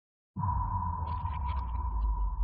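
Synthesized drone for a title-card transition: after a moment of dead silence it starts abruptly about a third of a second in, a deep rumble with a single steady tone above it, held without change.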